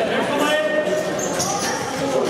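Futsal ball knocking as it is passed along a wooden sports-hall floor, with a short high shoe squeak about a second and a half in, amid players' voices in a large, reverberant hall.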